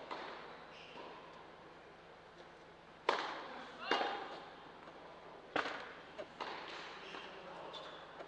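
Tennis ball struck by rackets in a short rally: three sharp hits starting about three seconds in, each echoing in a large indoor hall, followed by a couple of lighter taps of the ball.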